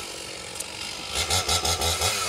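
Gas chainsaw idling, then revved in a quick run of about five throttle blips starting about a second in.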